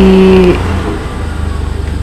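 A man's voice holding one drawn-out syllable for about half a second, then a steady low rumble that carries on alone, somewhat quieter.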